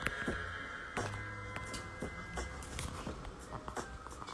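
Electronic beat played live on a small handheld sampler: sharp, clicky percussion hits over low bass notes.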